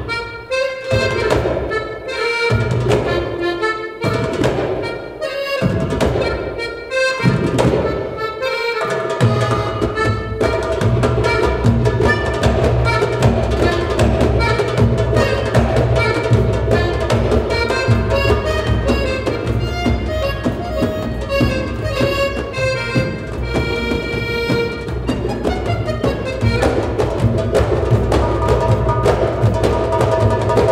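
Live Egyptian baladi music led by accordion. It plays short phrases separated by brief pauses, then from about nine seconds in the goblet drums (darbuka) join and the band plays on steadily.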